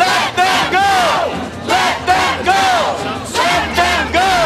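A crowd of protesters shouting and chanting together, loud, in short repeated calls that rise and fall in pitch.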